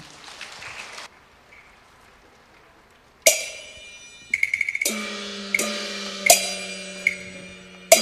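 Faint applause dying away, then Cantonese opera percussion starts: a sharp ringing strike about three seconds in, a quick run of clacks, then gong and cymbal strikes about every second, each left ringing.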